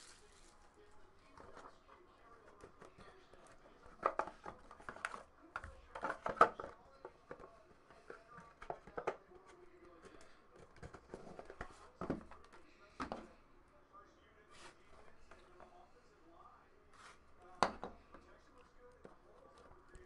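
Cardboard trading-card boxes handled by hand: scattered knocks, taps and rustles as inner boxes are pulled out and set down on a tabletop mat.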